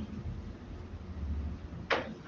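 A pause between spoken sentences, filled by a low steady background hum, with one short sharp sound near the end just before speech resumes.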